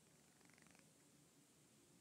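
Near silence: room tone, with a faint, brief rapid rattle about half a second in.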